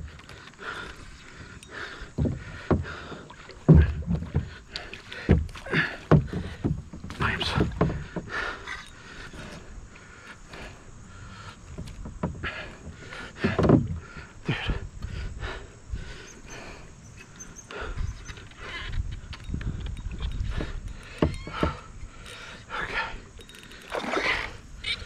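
Irregular knocks and thumps on a plastic fishing kayak and water splashing beside it as a large chain pickerel is played on a rod and reel.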